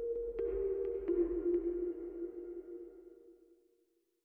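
Short electronic outro sting: a held low tone that drops slightly in pitch over a deep rumble, with a few short pings in the first second and a half, fading out over about three seconds.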